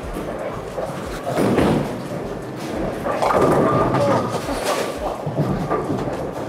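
A light 6-pound bowling ball thrown down a bowling lane: a thud about a second in as it lands, a stretch of rolling, then a longer loud clatter from about three seconds in as it reaches the pins.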